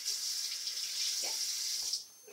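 Bathroom sink tap running, a steady hiss of water that starts and stops abruptly.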